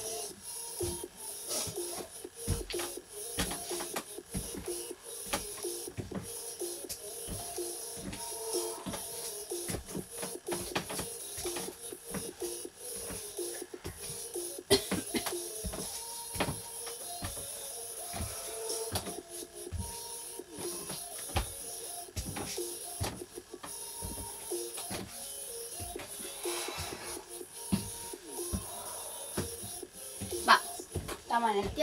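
Background music with a steady run of footfall thuds from jogging and skipping on the spot.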